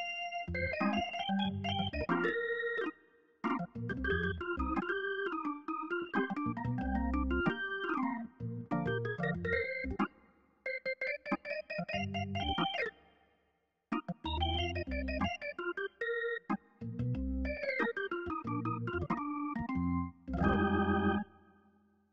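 Sampled Hammond organ (8Dio Studio Vintage Organ, recorded from a B2/B3 hybrid through a real Leslie cabinet) playing a melodic passage of chords over bass notes in short phrases. It stops briefly a little past halfway, and near the end a chord pulses rapidly.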